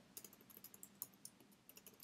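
Faint computer keyboard typing: a run of quick, irregular keystrokes as a line of code is typed and corrected.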